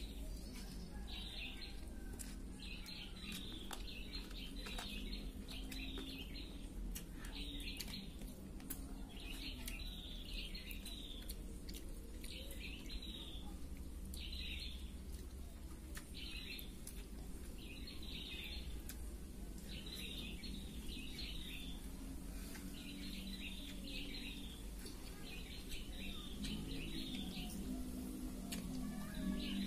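Small birds chirping in short bursts of rapid chirps, repeating about once a second, over a low steady hum.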